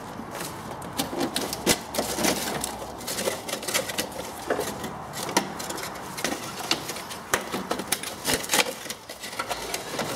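Hands working loose and pulling off a flexible preheater duct in an air-cooled VW Beetle engine bay: a string of irregular clicks, taps and light metallic rattles.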